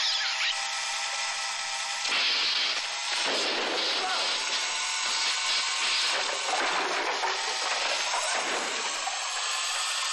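Steady whirring of a small model car's motor as it runs along a tabletop model, heard from a film soundtrack.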